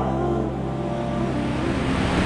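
Steady low hum with an even rushing noise over it, like traffic or machine noise in the background, heard in a pause between spoken phrases.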